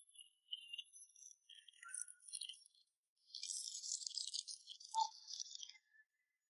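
Faint crinkling of plastic candy wrappers as hands pick through small packets of sour candy. About three seconds in it becomes a denser crackle, lasting a couple of seconds, as a single sweet is unwrapped.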